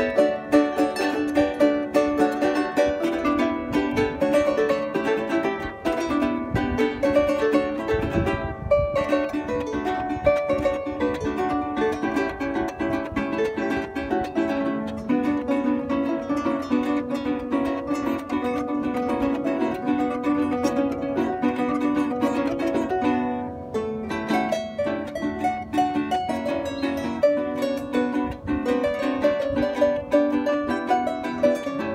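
Arpa llanera playing a lively plucked instrumental, accompanied by a strummed cuatro.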